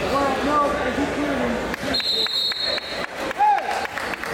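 Coaches and spectators shouting in a gymnasium, several voices overlapping over the first half. A short, steady, high whistle-like tone sounds about halfway through, and one loud shout comes near the end.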